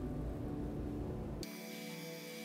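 Faint steady hum with a light hiss. About one and a half seconds in, it switches abruptly to a thinner, hissier tone with the low end gone.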